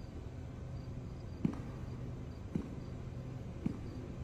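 Slow, soft footsteps: three dull thuds about a second apart over a low steady hum, with faint quick ticking above.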